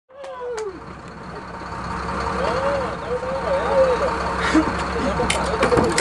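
A boat's engine running steadily under way, with people calling out over it.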